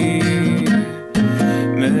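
Classical acoustic guitar strummed in chords in an open D-A-E-A-C#-E tuning. The strumming breaks off for a moment about a second in, then picks up again, and a voice begins singing just before the end.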